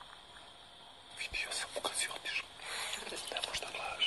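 People whispering to each other in hushed, breathy voices, starting about a second in.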